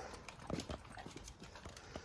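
A dog's claws clicking lightly on a hardwood floor as it walks, a scattering of soft taps.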